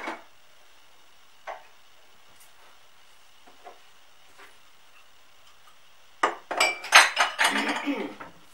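Kitchen crockery and utensils knocking and clinking: a sharp knock at the start, a lighter one about a second and a half in, a few faint ticks, then a busy burst of rapid clinks and knocks in the last two seconds.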